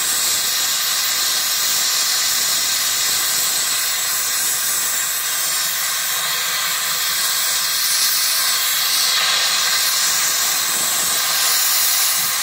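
Gas torch flame hissing steadily as it heats platinum to white heat in a melting dish.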